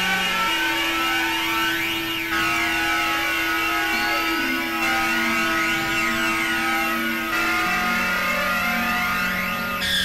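Novation Supernova II synthesizer playing held, droning chords that change to new notes every two or three seconds. A thin high tone glides slowly upward through the middle of the passage.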